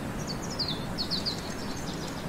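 A small songbird singing a quick run of short, high chirps that fall in pitch, over a steady low background rumble.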